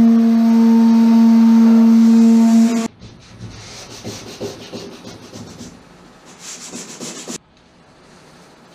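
An electric drill fitted with a 50-grit grinding disc runs at a steady speed with a high hum, grinding down lumps in an epoxy caulking bead, and stops abruptly about three seconds in. After that come quieter, irregular rough scrapes of an auto body putty tool carving along the epoxy seam.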